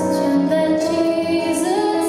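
A woman singing live to her own acoustic guitar, holding long notes, with her voice rising in pitch near the end.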